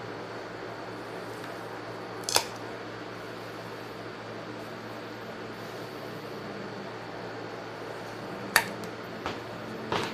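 Scissors cutting through a thin plastic cake-structuring tube, a single sharp snap about two seconds in. Another sharp click comes near the end, over a steady low background hum.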